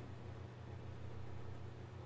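Steady low hum with a faint hiss, the background noise of the studio, with no distinct sound standing out.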